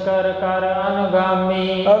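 A man's voice chanting in a drawn-out, sung recitation, each tone held at a nearly steady pitch for long stretches.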